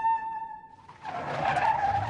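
A held musical note fades out, then about a second in a sudden loud rushing noise rises with a wavering shrill tone over it.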